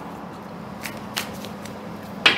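A deck of tarot cards shuffled by hand: soft card rustle with a few light snaps in the second half.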